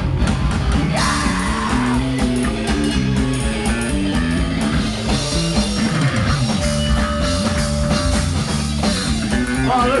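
Live rock band playing loudly: distorted guitar riffs, drums and keyboards, with yelled vocals. A single note is held for a couple of seconds past the middle.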